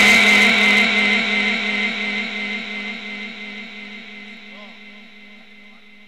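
Amplified chanted Quran recitation ending on a held note that dies away slowly through the sound system's echo over several seconds, leaving a faint steady tone.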